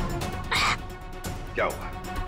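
A man makes a short noisy slurp at the tea, then gives a falling vocal cry of disgust at its bad taste, over background music.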